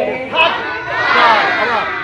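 A group of children's voices shouting out together, many voices overlapping at once.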